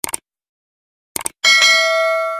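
Subscribe-button animation sound effects: a short mouse click, then about a second later a second click followed by a bright notification-bell ding that rings on steadily.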